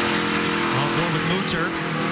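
ARCA stock car's V8 engine running steadily at speed, heard from inside the car's cockpit.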